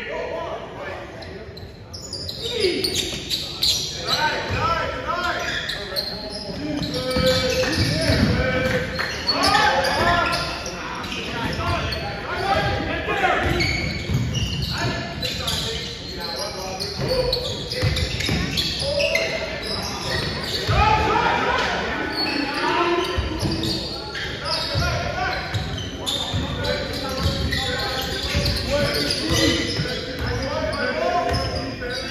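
Basketball game sounds in a large gymnasium: a ball bouncing on the wooden court amid indistinct shouting and chatter from players and spectators, all echoing in the hall.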